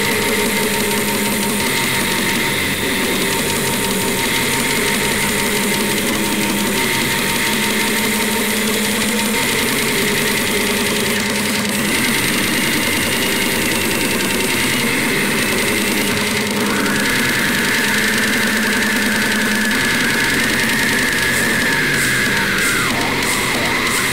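Slamming brutal death metal: a dense, loud wall of heavily distorted, down-tuned guitars and drums, with a held high note coming in about sixteen seconds in.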